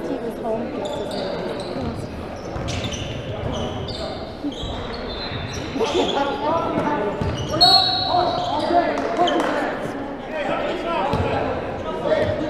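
A basketball being dribbled on a hardwood gym court, the bounces echoing around a large hall, over the talk and calls of players and onlookers.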